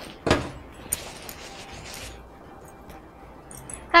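A few short knocks and clatters of kitchen items being handled and set down, the loudest about a third of a second in, a lighter one near one second.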